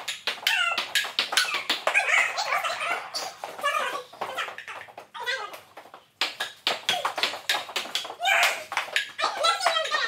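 Table-tennis ball clicking off paddles and the table in a quick rally, mixed with loud, high-pitched wordless shrieks and yells from the players.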